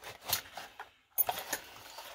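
A Master Lock padlock and its brass keys being pulled out of a cardboard retail box: cardboard rustling with small metallic clicks and key jingles, and a sharper click about a second in.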